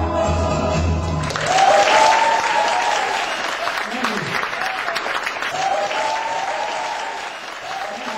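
The music of the song ends on its last chord about a second in, and the audience breaks into applause that goes on, easing off slightly near the end.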